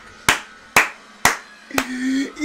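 One person clapping hands slowly, four claps about half a second apart.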